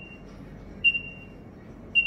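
Zebra DS9908R barcode/RFID scanner in hands-free mode beeping as labels are passed under it. It gives short, high single beeps about a second apart, each one marking a successful read.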